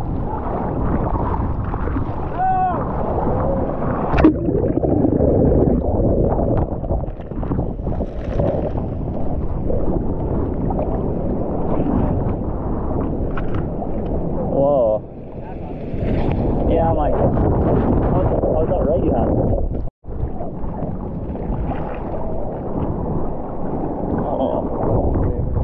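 Seawater sloshing and splashing around a surfer paddling on a surfboard, heard close up on an action camera just above the surface, with wind on the microphone. A sharp splash about four seconds in, and the sound cuts out for an instant near the end.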